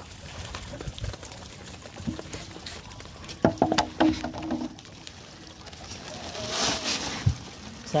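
A mesh net bag of freshly caught live prawns and wet leaf litter being handled and tipped into a sack: knocks and brief voice sounds in the middle, then a short wet rushing rustle near the end.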